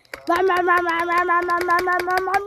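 A child's voice holding one long, steady note, like a sound-effect yell, with a rapid run of light clicks under it.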